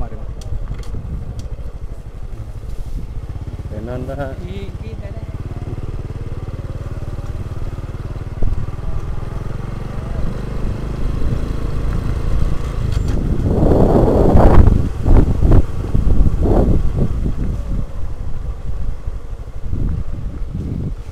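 Motorcycle engine running steadily at low speed on a rough dirt track, growing louder for a few seconds about two-thirds of the way in.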